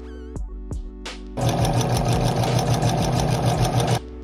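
Electric sewing machine running at speed, a fast, even stitching rattle that starts abruptly about a second and a half in and cuts off at the end, over background music with a beat.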